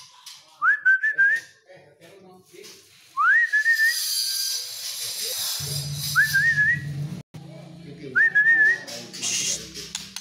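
Someone whistling a short phrase that slides up and then wavers, four times, a few seconds apart. A steady low hum joins about halfway through.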